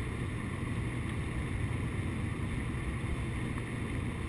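Steady cabin noise of a Mercedes-Benz car cruising on the highway: an even low engine and drivetrain hum under tyre and wind noise.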